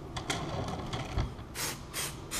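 Short hissing bursts of an aerosol release-agent spray (Ease Release 200) misting the model, one strong burst near the end, with a few light clicks and a low knock from the turntable being turned.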